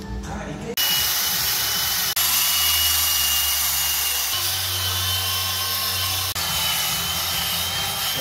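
Cordless drill spinning a buffing wheel against a steel motorcycle exhaust pipe: a loud, even rushing noise with a steady high whine, starting under a second in and running on with brief breaks where the footage cuts.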